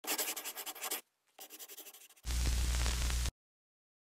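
Pen-scratching writing sound effect: two runs of quick scratchy strokes with a short gap between them, followed by about a second of hiss with a low rumble underneath that cuts off suddenly.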